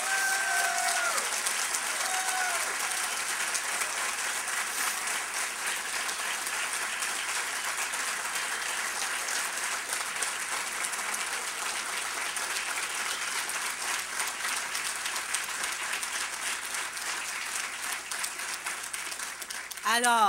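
Large crowd applauding steadily, with two short falling calls rising above the clapping in the first two seconds.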